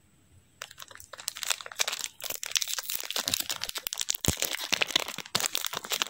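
Foil trading-card pack wrapper crinkling and crackling as it is worked open by hand, starting about half a second in and going on irregularly.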